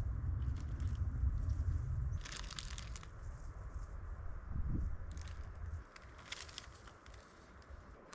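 Clear plastic bag crinkling in a few short bursts as it is handled while picking blueberries by hand. A low rumble runs under the first couple of seconds and fades out.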